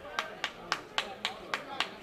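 Hands clapping in a quick, steady rhythm, about four claps a second, over faint crowd noise in the ballpark stands.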